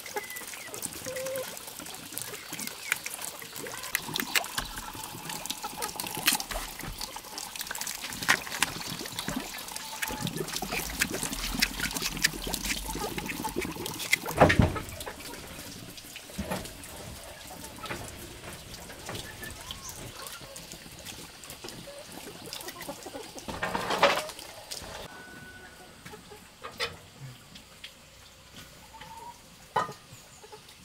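Water splashing and trickling amid many small clicks and knocks, with two louder knocks about halfway through and a little past two-thirds of the way in.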